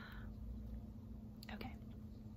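A woman's soft, breathy exhale, then a quiet, half-whispered "okay" near the end, over a faint steady room hum.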